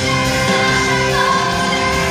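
A live pop ballad played by a band through a concert sound system, a woman singing long held notes that slide from one pitch to the next.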